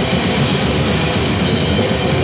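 Death metal band playing live: loud, dense distorted guitars and drums without a pause.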